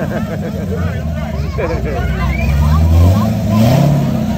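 A Chevrolet Corvette's V8 exhaust rumbling as the car rolls by at low speed, with a short rise in revs about two seconds in that falls away near three seconds and then climbs again near the end.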